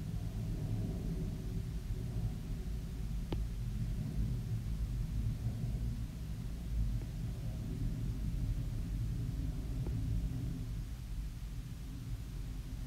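Low, steady background rumble and hum of room tone, with a single faint click about three seconds in.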